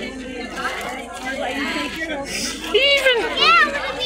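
Chatter of a dense crowd, many voices talking at once. About three seconds in, a high voice calls out loudly, its pitch swooping up and down.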